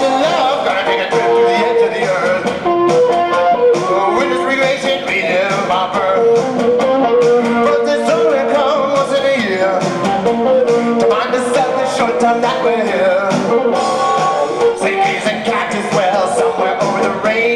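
Blues played live on a Chapman Stick, both hands tapping the strings, running on without a break.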